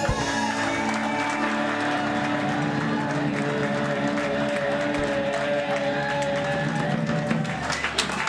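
Live band music with held notes and chords, mixed with audience applause that grows thicker toward the end.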